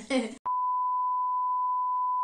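A woman's brief laugh, cut off by a steady single-pitch test-tone beep, the kind played over TV colour bars, that starts about half a second in and holds unchanged.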